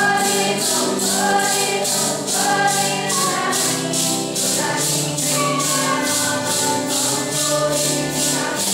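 A group of voices singing a Santo Daime hymn (hino) in slow held notes, with maracas shaken in a steady beat of about three strokes a second.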